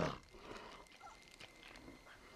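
A large dinosaur's growl, a film sound effect, cuts off abruptly at the very start and leaves a quiet stretch with only faint small sounds.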